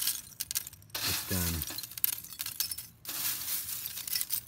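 Handfuls of dry biochar (charred wood chips) stirred in a wire-mesh pot, the pieces clinking against each other with a glassy sound, which is said to be the sign of finished biochar. The clatter comes in two stretches, a short pause after the first second, and stops about three seconds in.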